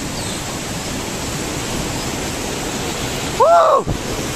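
Mountain stream cascading over boulders, a steady rush of white water. Near the end a person's voice gives one short loud call that rises and falls.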